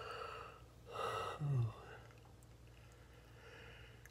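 A man's audible breathing: a breath in and a breath out, ending in a short voiced sigh that falls in pitch about a second and a half in, then quiet room tone.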